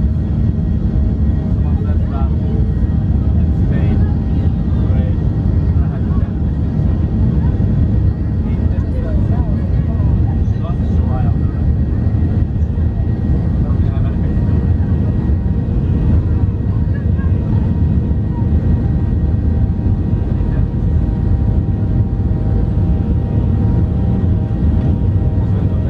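Boeing 737-800's CFM56-7B jet engines at high thrust during the takeoff roll, heard inside the cabin: a loud, steady rumble of engines and wheels on the runway, with thin steady whine tones from the engines running through it.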